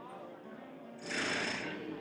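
Background voices in a hall, with a short loud rustling noise about a second in.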